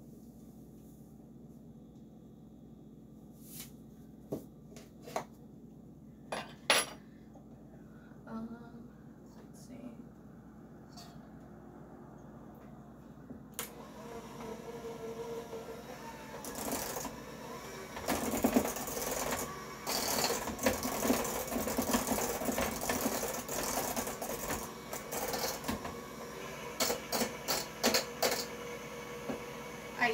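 A few sharp clicks and knocks, then about 13 seconds in an electric hand mixer starts up and runs steadily. Its beaters rattle against a stainless steel bowl as it mixes wet cookie-dough ingredients, louder from about 18 seconds on.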